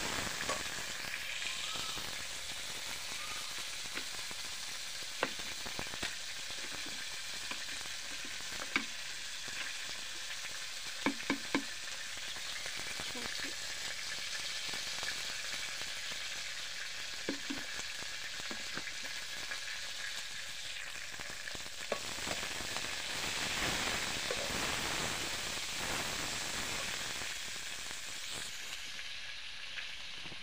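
Crickets frying in a steel wok: a steady sizzle, stirred with a metal spoon, with a few sharp clicks of the spoon against the pan.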